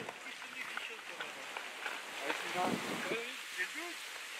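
Mostly speech: short bursts of people talking in French over a steady outdoor hiss.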